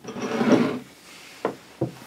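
A scraping or sliding sound that swells and stops within the first second, then two short sharp knocks.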